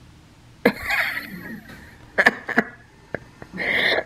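A person laughing and coughing in a few short, sudden bursts.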